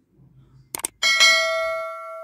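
Two quick clicks, then a bright bell ding that rings on and fades over about a second and a half: the click and notification-bell sound effect of a subscribe-button animation.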